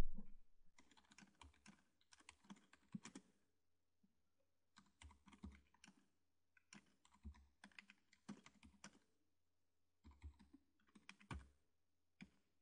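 Faint typing on a computer keyboard: rapid keystrokes in short runs with brief pauses between them, as a sentence is typed.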